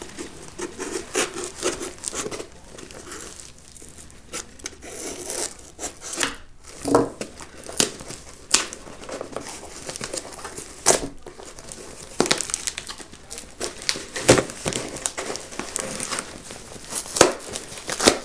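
Cardboard shipping box being opened by hand: packing tape tearing and plastic wrapping crinkling in irregular crackles and rustles, with a few louder snaps.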